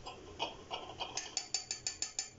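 A small metal spoon tapped repeatedly against a stainless steel pot, a run of about ten quick metallic clicks that come faster toward the end.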